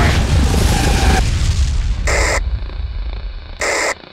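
Edited sound effect: a deep boom whose rumble fades over about three seconds, then two short bursts of electronic static about a second and a half apart, as a video-glitch transition.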